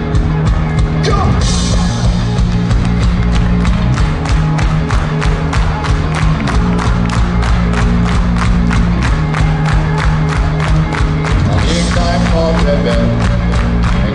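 Live ska-punk band playing loud through the PA: electric guitars, bass and drums drive an even beat of about four strokes a second. A cymbal crashes about a second and a half in, and the sung vocal comes back in near the end.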